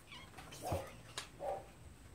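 A house cat meowing twice, briefly.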